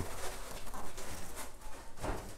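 Faint scratching and light knocks of an expanded polystyrene (EPS) foam board being handled and pressed up into a metal ceiling framework.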